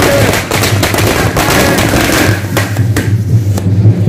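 A rapid, irregular string of sharp cracks over a steady low hum. The cracks thin out after about two and a half seconds.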